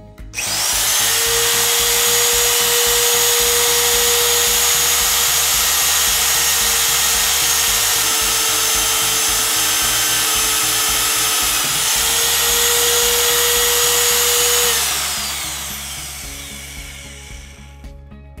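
Champion AC50 magnetic drill press running a twist drill through a steel plate: the motor starts suddenly and runs with a steady high whine while cutting. About fifteen seconds in it is switched off and winds down, the whine falling in pitch as it coasts to a stop.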